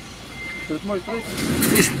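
Reversing alarm on a tractor-trailer truck sounding a single steady high beep about half a second in as the truck backs up, over the low running of its diesel engine.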